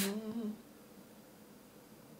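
A man's voice trails off in a short held hum lasting about half a second, then near silence.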